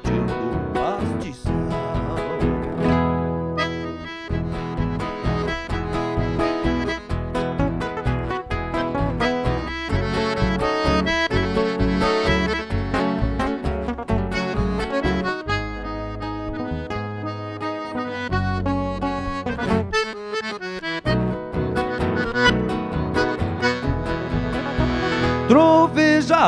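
Instrumental break in a gaúcho nativist song: accordion playing the melody over strummed and plucked nylon-string acoustic guitars and electric bass.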